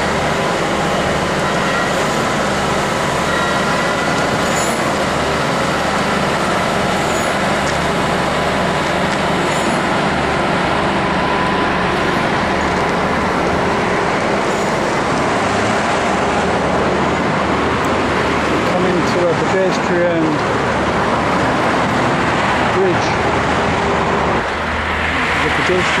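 Steady, loud road traffic noise mixed with the diesel engine of a concrete pump truck running, with a faint steady whine through about the first half.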